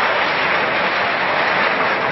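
Water jet from a fire hose spraying onto burning debris: a steady, rushing hiss.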